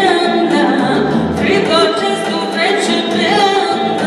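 A woman singing a song into a microphone, amplified, with sung notes that bend and slide in pitch.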